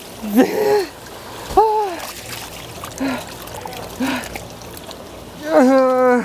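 Running water pouring into a plastic basin and splashing as a large raw octopus is kneaded and scrubbed in it, with short vocal exclamations over it.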